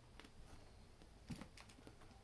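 Near silence with a few faint soft taps and scuffles, the loudest a little over a second in: kittens' paws scrabbling on a fabric sheet as they play-fight.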